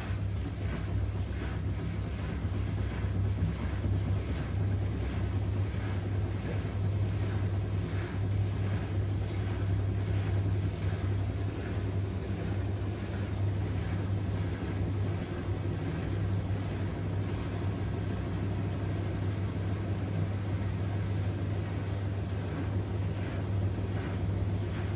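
Front-loading washing machine in a wash cycle, its drum tumbling wet laundry so that water sloshes in soft, evenly repeating swishes over a steady low hum.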